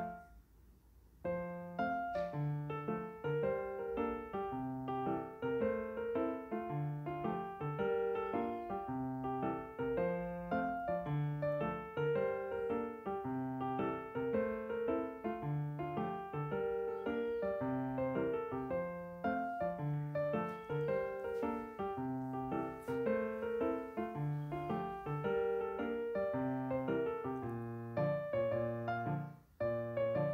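Background piano music, a steady run of notes that starts about a second in after a moment of silence and breaks off briefly near the end.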